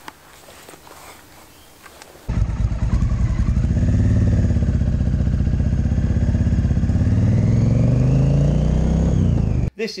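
Motorcycle engine running while riding, picked up by a handlebar-mounted action camera: the engine note rises under acceleration, holds steady, then drops as the throttle eases off, and cuts off suddenly near the end. Before it, about two seconds of quiet outdoor background.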